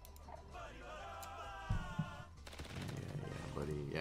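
Esqueleto Explosivo 2 online slot game audio: background music with a wavering melody, two sharp thumps a little under two seconds in as the skull symbols drop onto the reels, then a quick run of clicks.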